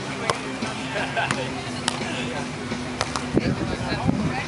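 Beach volleyball rally: several sharp slaps of hands and forearms striking the ball, a second or so apart, over people talking and background music.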